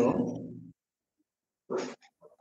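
A voice calling "hello" over a video-call audio link, drawn out and falling in pitch, then a second of silence and a short noisy burst near the end.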